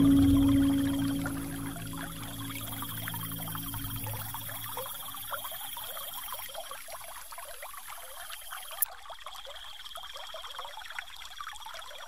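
Water trickling and pouring steadily, the soft nature-sound bed of a relaxation track. The last sustained notes of gentle music fade out over the first few seconds, and there is one brief sharp click about nine seconds in.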